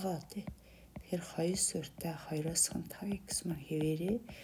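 Speech only: one person talking indistinctly.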